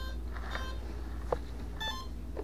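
Avian ESC beeping as it reboots after being programmed for reverse thrust: short electronic beeps about two a second, fading, then a higher beep near the end, with a single click a little after one second in.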